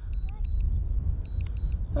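Wind rumbling on the microphone, with short, high double beeps from the DJI drone's remote controller repeating about once a second as the drone auto-lands.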